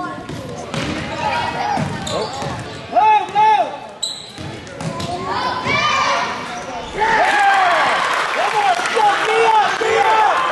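A basketball bouncing on a gym's hardwood floor during a youth game, with spectators calling out in the echoing hall. About seven seconds in, as a shot goes up, the crowd noise gets louder and fuller.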